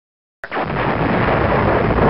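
Loud, steady rushing blast of a shipboard missile's rocket motor at launch, in band-limited archival sound. It starts abruptly about half a second in, after a moment of dead silence.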